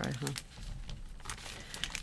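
Large clear plastic sleeve crinkling and crackling in a series of light, scattered ticks as it is handled and pulled open.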